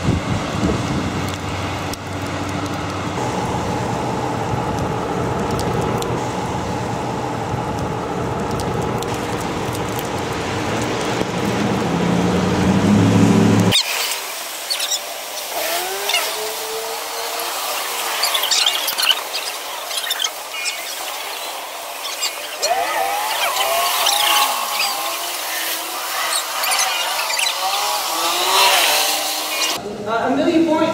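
Traffic on a rain-wet road: a steady hiss of tyres and engines that swells as a vehicle draws close, then stops abruptly about fourteen seconds in. After that comes a thinner outdoor sound with scattered calls and voices of a group and a few clicks.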